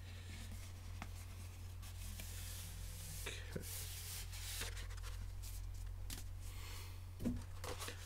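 Faint rustling and light scraping of a thin paper poster and its packaging being opened and handled, with scattered small clicks, over a steady low hum.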